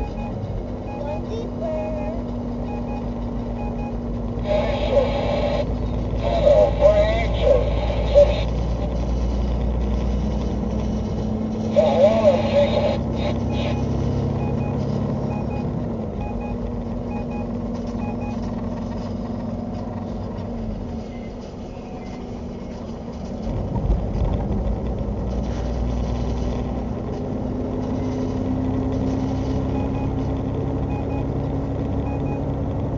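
Semi-truck cab at highway speed: the diesel engine drones steadily under road noise, its pitch shifting slightly, with a dip about two-thirds of the way through. A high, evenly repeating beep sounds near the start and again near the end.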